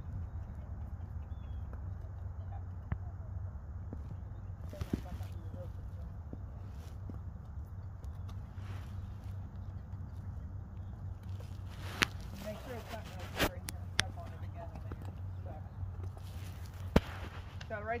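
A steady low rumble with a handful of sharp clicks and knocks, the loudest about twelve seconds in and again near the end. Faint voices can be heard in between.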